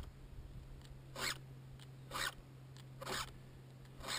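Round file stroked across the cutter teeth of a Stihl chainsaw's chain, three short file strokes about a second apart, sharpening a chain dulled by cutting dead wood.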